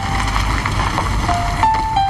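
Soft piano music with a car driving slowly up underneath it: a low engine rumble and tyre noise, strongest in the first second and a half.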